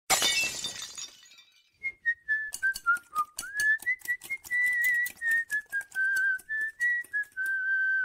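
Intro jingle: a bright ringing burst at the start that fades within a second, then a whistled melody over a quick rhythm of sharp clicks.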